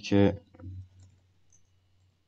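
A few faint computer keyboard key clicks as text is typed, over a steady low hum.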